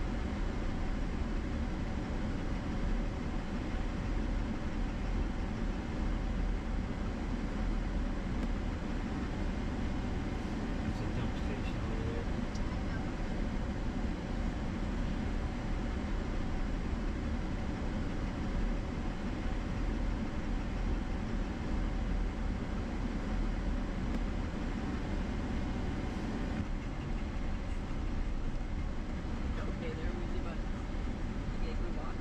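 Steady engine and tyre noise of a Chevrolet Silverado pickup driving along, heard from inside the cabin.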